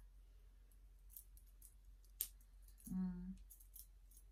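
Faint small clicks and taps of metal bracelets being handled on a wrist, with one sharper click about two seconds in. A woman gives a short hum about three seconds in.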